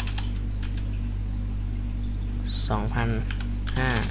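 Computer keyboard keys clicking a few times as a number is typed into a value field, over a steady low hum.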